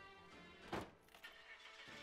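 A car door shutting with a single thump about three quarters of a second in, over quiet background music.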